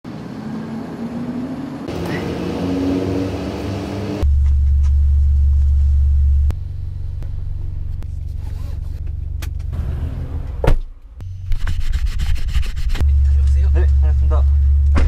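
Hyundai Avante AD Sport engine idling while stationary, heard from inside the cabin as a steady low hum from about four seconds in, with a few clicks and knocks near the middle.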